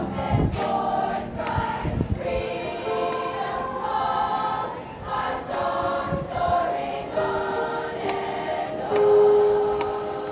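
Middle school choir of young voices singing in unison and harmony, ending on a long held note about nine seconds in, the loudest part.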